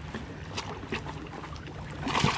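Lake water lapping and splashing beside a kayak as a landing net scoops up a hooked spotted bass, with a few faint splashes.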